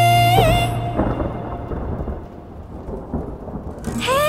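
A held sung note breaks off under a second in, and a low rolling rumble of thunder follows, easing off toward the end.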